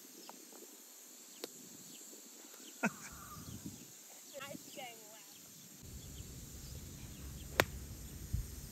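A single sharp crack of a golf club striking the ball near the end, the loudest sound here, over quiet open-air ambience with a steady faint hiss. There are faint calls about halfway through, and low wind rumble on the microphone in the last couple of seconds.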